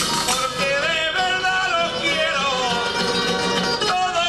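A solo male voice sings an ornamented, melismatic copla in the style of a Murcian pascua or aguilando, the improvised verse of the cuadrilla's guión. Behind him, laúdes, bandurria and guitar play a continuous accompaniment.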